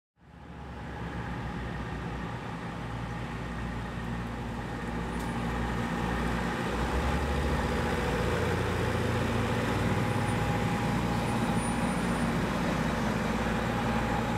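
Large tour coach bus running as it drives past, a steady low engine hum with a faint whine, slowly growing louder as it comes closer.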